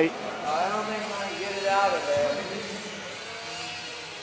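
Small brushed electric motors of micro RC aircraft whining, their pitch rising and falling as the throttle changes.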